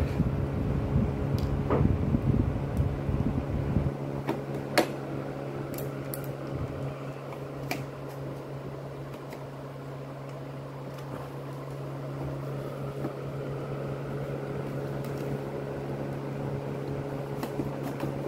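Steady mechanical hum throughout, with a few sharp plastic clicks and knocks as the panels of a Gabby's Dollhouse toy are handled and fitted together, mostly in the first eight seconds. A low rumble of handling runs under the first few seconds.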